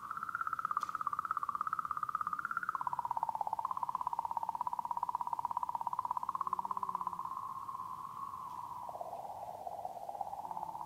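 The "singing comet" recording of comet 67P/Churyumov–Gerasimenko: oscillations in the comet's magnetic field, picked up by the Rosetta probe and sped up into an audible, eerie electronic warble. It is a wavering tone that pulses rapidly and steps down in pitch about a quarter of the way in, then again near the end.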